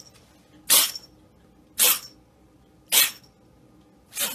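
Kitten sneezing repeatedly: three short, sharp sneezes about a second apart.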